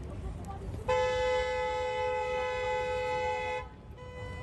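Car horn held in one long steady blast of nearly three seconds, starting about a second in and cutting off near the end, over a low rumble.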